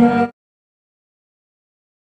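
A woman singing into a microphone over music, cut off abruptly a fraction of a second in, then dead silence.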